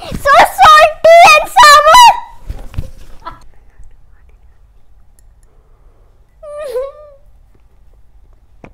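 A child shrieking with laughter while being tickled: several loud, high-pitched bursts over the first two seconds or so, then fading into quiet room tone. One short vocal sound comes near the end.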